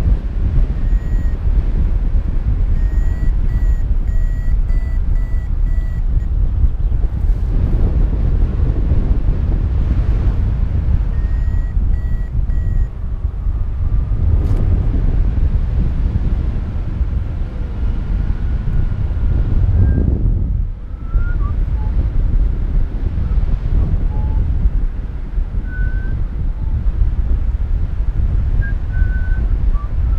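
Airflow buffeting the microphone in paraglider flight, with a variometer beeping at about two short beeps a second, rising slightly in pitch, for a few seconds near the start and again briefly around twelve seconds in, a sign of climbing in lift.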